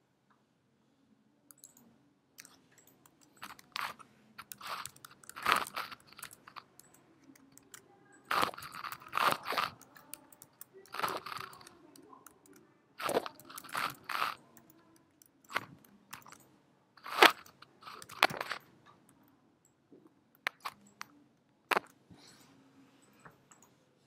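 Computer keyboard typing in short irregular bursts of keystrokes, with pauses of a second or two between bursts.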